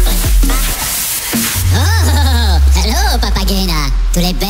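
Tribal electronic dance music: a steady kick-drum beat that drops out about a second and a half in, giving way to a held deep bass note under swooping, pitch-bending sounds.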